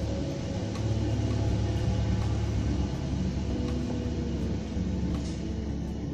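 A steady low rumble under faint background music.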